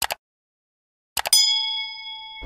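Subscribe-button animation sound effects. A quick double mouse click comes first. About a second later there are more clicks, then a notification-bell ding that rings on steadily with several clear tones.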